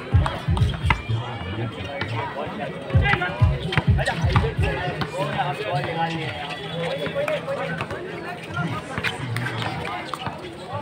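Voices and chatter at an outdoor basketball court over music from a loudspeaker, with dull low thumps in the first second and again about three to four seconds in.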